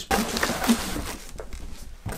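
Cardboard box being opened by hand: a burst of cardboard rustling and scraping as the flaps are pulled back, loudest in the first second with a sharp crack partway in, then quieter rubbing.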